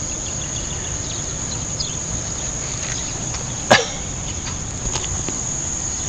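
Crickets chirring in a steady, unbroken high trill. About three and a half seconds in comes one short, loud call that sweeps steeply down in pitch, with a few faint chirps around it.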